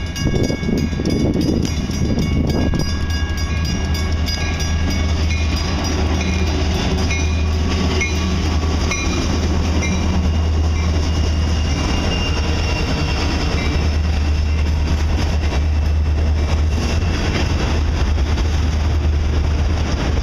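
EMD SD60 and SD40-2 diesel-electric locomotives approaching and passing close by, their engines droning steadily, then a string of autorack freight cars rolling past with steady wheel and rail noise. A grade-crossing warning bell rings repeatedly behind it in the first half.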